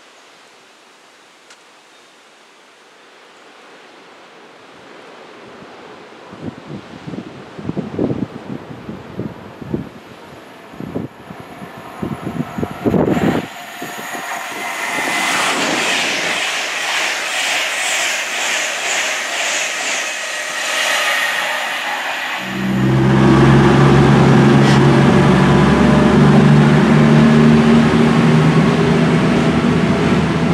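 Class 390 Pendolino electric train passing through a station at speed: it builds from a faint approach, through gusts of wind buffeting the microphone, to a loud rush of wheels and air as it goes by. About two-thirds of the way in, the sound cuts abruptly to a different, steady train sound with a loud low drone.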